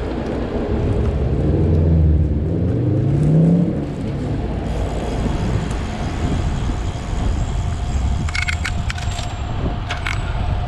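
City traffic heard from a moving bicycle over a steady rumble of wind and road noise. A nearby motor vehicle's engine accelerates in the first few seconds, its pitch rising, and this is the loudest part. A few sharp clicks come near the end.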